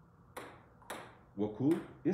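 Two short, sharp sounds about half a second apart, then a man's voice briefly near the end.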